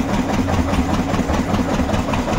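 Single-cylinder stationary diesel engine with twin flywheels running steadily with an even, rapid beat, driving a village flour mill (chakki) through flat belts.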